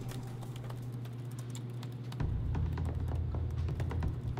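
Fast typing on laptop keyboards by several people, a stream of quick key clicks. Under it a low, steady drone of background music swells about two seconds in.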